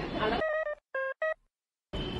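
Musical staircase playing three short electronic keyboard-like notes in quick succession, each triggered as a foot breaks a step's laser beam.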